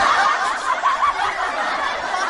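A group of people laughing and chuckling together in many overlapping voices, a canned laugh-track sound effect.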